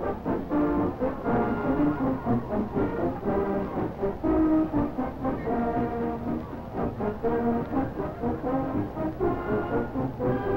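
High school marching band playing, with the brass section carrying a melody of held notes that shift in pitch.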